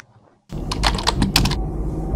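After a short gap of silence, a steady low rumble starts about half a second in, with a quick, irregular run of about eight sharp clicks over it for about a second.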